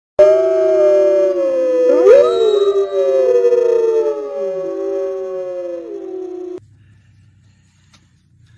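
Several overlapping long howls gliding slowly in pitch, loud. They start suddenly and are cut off abruptly about six and a half seconds in, leaving only a faint low hum.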